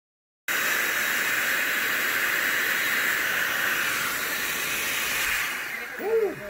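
Electric air blower blowing onto burning charcoal in a small ceramic hibachi grill: a steady rushing hiss that starts half a second in and fades near the end.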